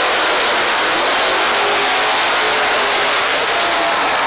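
Two monster trucks racing side by side at high revs, their engines heard as a loud, steady wash of engine noise.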